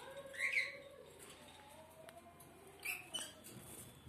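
Small caged pet birds chirping: one short high chirp that rises and falls about half a second in, and another short high call near three seconds.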